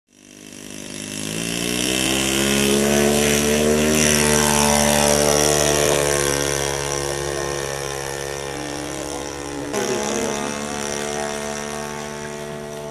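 Small engine of a radio-controlled model airplane in flight. It fades in, rises in pitch and loudness, then falls slowly in pitch as the plane passes and draws away, with a sudden change in the sound near the end.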